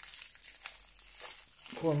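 Faint crinkling of plastic wrap as a bundle of 18650 lithium-ion cells is handled in its wrapping.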